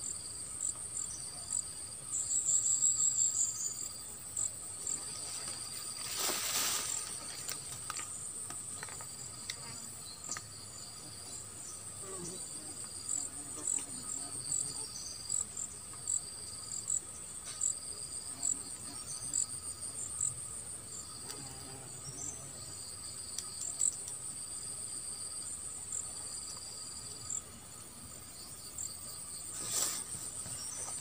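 Insects chirping steadily in grass: a continuous high trill with a second, pulsing chirp underneath. A brief rush of noise about six seconds in.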